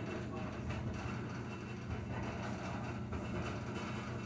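Whirlpool front-load washing machine running mid-cycle, a steady low hum.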